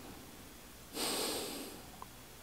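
A person's one loud exhale through the nose close to the microphone, starting suddenly about a second in and fading away within a second.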